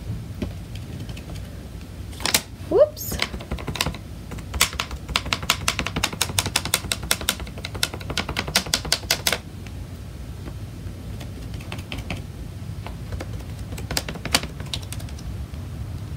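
A makeup sponge loaded with paint is dabbed rapidly on a thin laser-cut wooden pumpkin cutout. It makes a fast, even run of light taps for about five seconds, with a few scattered taps and clicks before it.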